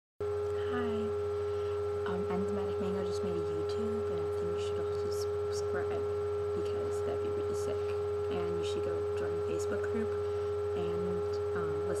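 A steady electronic tone with a low hum beneath it, unchanging in pitch and level, cutting in right at the start. Faint short low notes come and go under it.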